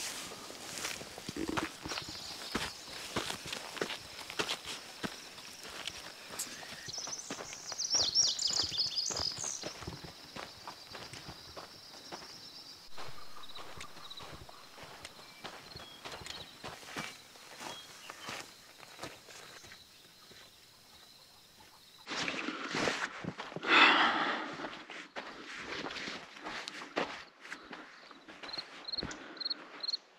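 Footsteps crunching on a dirt and gravel hiking trail at an even walking pace, with a faint steady high tone behind them and a brief burst of high chirping about eight seconds in. About two-thirds of the way through, the sound changes suddenly to a louder rushing noise.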